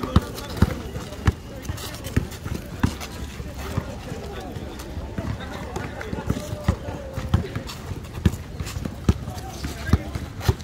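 A basketball dribbled on an asphalt court: sharp single bounces, roughly one every half second to a second, irregular in rhythm, over indistinct voices of players.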